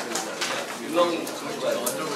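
Indistinct chatter of several people talking at once in a room, with a few light knocks and rustles from people moving and handling things at their desks.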